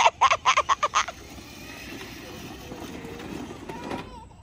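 Laughter in quick bursts for about the first second, then the steady rolling rumble of a child's electric ride-on Jaguar F-Type toy car, its small motors and plastic wheels running over rough asphalt.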